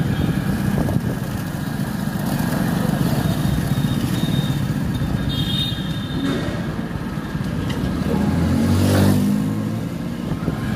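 Motor vehicle engine running in street traffic, a steady low rumble. About nine seconds in, an engine grows louder and then fades.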